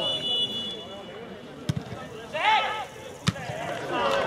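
A football kicked hard once, about a second and a half in, followed by a short shout and a second dull thud of the ball near the end.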